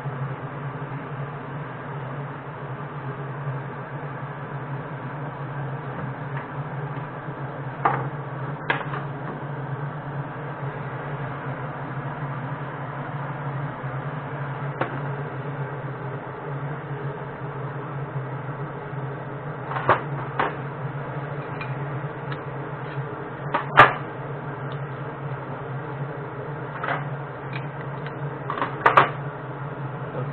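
A steady low machine hum, with a few sharp metallic clicks and knocks as the hand-held metal casting moulds for feeder sinkers are picked up and set down on the bench; the loudest knock comes about two-thirds of the way through.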